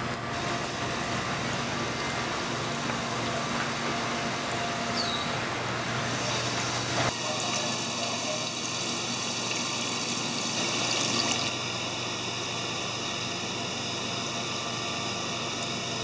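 Steady rush of circulating water and running pumps in a saltwater aquarium holding system. About seven seconds in the sound changes abruptly to a slightly different steady water noise with a faint even hum.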